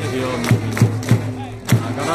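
Baseball cheering-section chant: a big cheering drum beats about three times a second while a crowd of fans chants a player's cheer song in unison.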